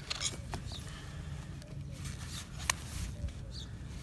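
Farrier trimming a miniature donkey's hoof: faint scraping and handling with a few sharp clicks, the sharpest about two-thirds of the way in, over a low rumble.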